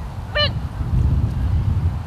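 One short, high vocal call about half a second in, over a low rumble.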